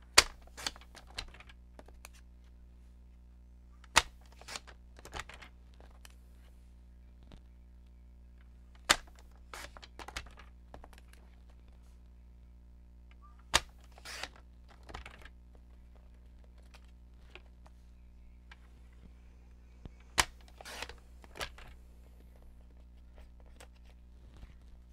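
Sharp clicks and taps from a plastic paper trimmer as paper is lined up and cut. They come in about five clusters of two or three clicks, every four to six seconds, the first click of each cluster the loudest.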